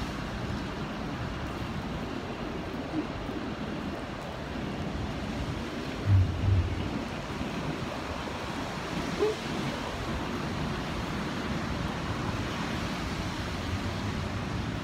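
Steady rushing noise of city street traffic on wet roads, mixed with wind on the phone's microphone as it is carried along. Two low thumps come close together about six seconds in.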